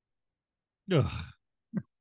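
A man's short 'ugh', a sighing grunt that falls in pitch, about a second in, followed by a brief vocal blip near the end.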